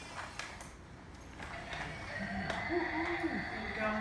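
A few light clicks and taps as a plastic toy excavator is worked free of its cardboard box.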